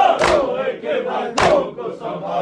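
Mourners chanting an Urdu noha lament together, with a sharp unison strike of hands on chests (matam) about every 1.2 seconds, twice in this stretch.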